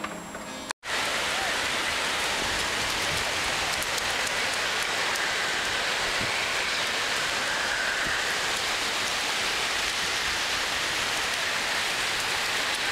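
Background music stops under a second in. After a brief gap, a steady, loud wash of small waves breaking on a sandy shore begins.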